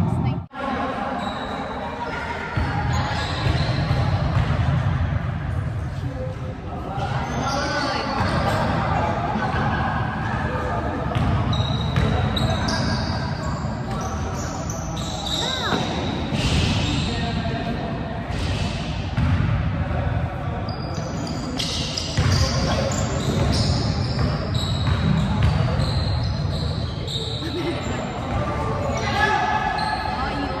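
Live amateur basketball in a large gym hall: a basketball bouncing on the hardwood court among players' shouts and calls.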